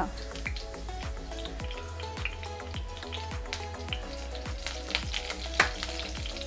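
Fresh curry leaves sizzling in hot oil in a wok, with many small sharp crackles and pops throughout. Quiet background music plays underneath.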